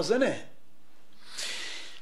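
A man's speech trails off, and after a short pause he draws in a quick, audible breath close to the microphone, lasting about half a second, just before speaking again.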